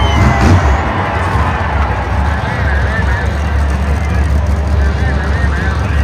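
Several monster trucks' supercharged V8 engines idling together, a deep steady rumble, with voices from the crowd over it.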